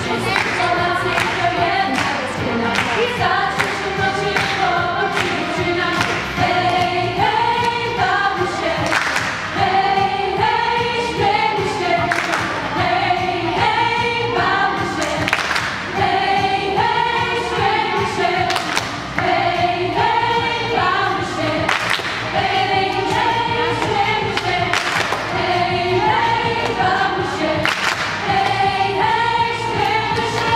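Girls' and women's choir singing a lively song a cappella, the melody moving in repeating stepped phrases. A steady beat of sharp strokes runs under the voices.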